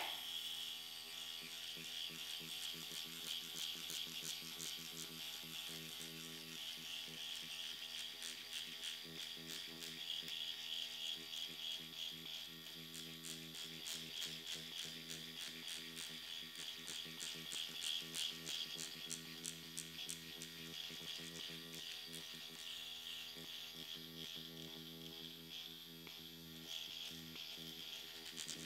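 Dr. Pen X5 electric microneedling pen running at a fast speed setting, a steady faint motor buzz with rapid fine ticking from the needle cartridge as it is worked over the upper lip.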